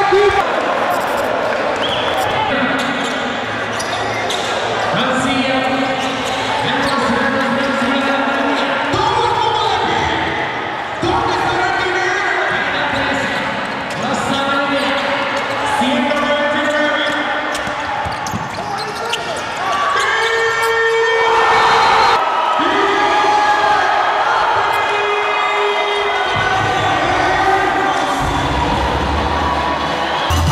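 A basketball bouncing on a gym court, with voices carrying through the hall.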